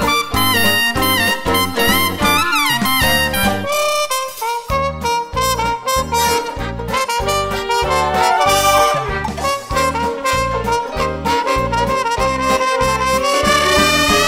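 Multitracked brass ensemble: a high 'screamer' lead trumpet over trombone and further brass parts in a jazzy big-band arrangement, with a pulsing low bass line. A long upward glide rises near the end.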